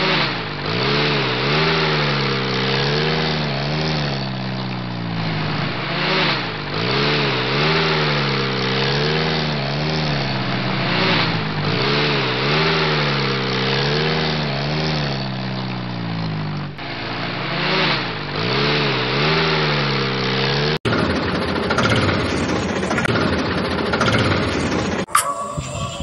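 Tractor engine running, its pitch rising and falling over and over like repeated revving. About 21 seconds in, it switches abruptly to a rougher, noisier engine sound.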